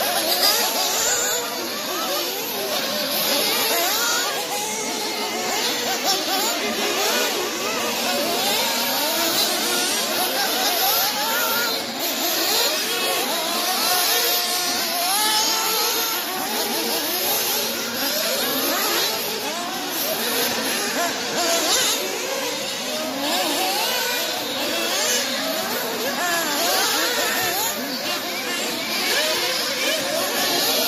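Several 1/8-scale nitro buggies' small two-stroke glow-fuel engines racing together, their high-pitched whines rising and falling as each car revs and backs off through the jumps and corners.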